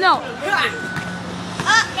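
Children's voices: a shout at the start, then quieter talk with a faint steady background hum.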